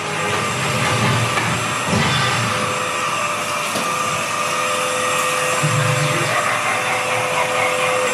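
Cordless stick vacuum running steadily, a high motor whine over a constant rush of air.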